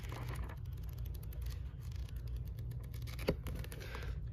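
Paperback book's pages being flipped through by hand: a run of soft paper flicks and ticks, with one sharper flick about three seconds in.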